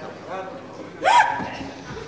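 A person's sudden short cry, sharply rising in pitch, about a second in, with faint talk just before it.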